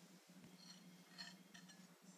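Near silence: room tone with a steady low hum and a few faint brief rustles.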